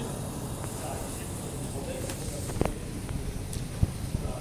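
Steady low rumble of gym room noise and microphone handling, with a couple of sharp knocks in the second half as the camera is moved.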